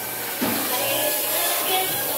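A dental hose instrument hissing steadily inside a child's open mouth, starting about half a second in: air or suction at work during a tooth cleaning.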